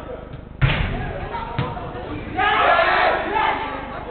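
A football struck hard with a loud thud about half a second in, and a second, lighter thud a second later. Then several players shout out together at once, reacting to a near miss, with the echo of a large indoor hall.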